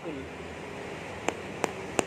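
Unripe Montong durian husk tapped three times with a small hard tool, giving short, flat "tok" knocks about a third of a second apart. There is no hollow echo from inside the fruit: the sign that the durian is not yet ripe, where a ripe one answers with a resonant "bug bug".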